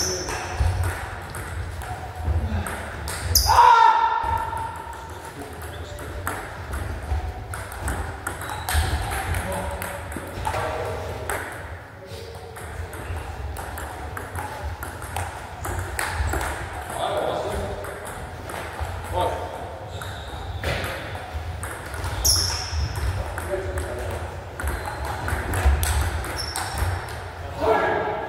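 Table tennis rallies: a celluloid-type ball clicking sharply off rubber-faced bats and the table, in bursts of several quick hits, ringing slightly in a large hall. A loud voice calls out about four seconds in, and shorter bits of voice come between points.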